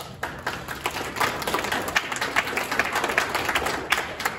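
A small congregation applauding, a patter of hand claps that starts sparse and fills in within the first second.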